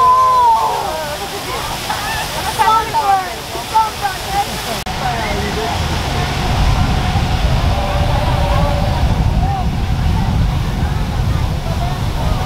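Several people's voices calling out and talking over a steady rushing noise; about halfway through the voices drop back and a low rumbling rush takes over.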